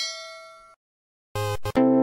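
A bell-like ding rings out and fades away within the first second. After a short silence, electronic music with a steady beat starts near the end.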